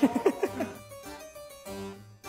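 Background music in a light, plucked, harpsichord-like keyboard sound, played as short separate notes, with a quick run of sliding notes near the start.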